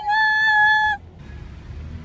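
A woman's voice holding one high, steady note for about a second, the drawn-out end of a cheer, then stopping to leave the low rumble of road noise inside the car.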